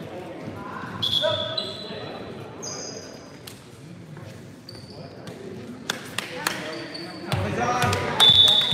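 Volleyball game sounds in a large, echoing school gym: players' voices, short high squeaks of sneakers on the hardwood floor, and a few sharp knocks of the ball being bounced and hit.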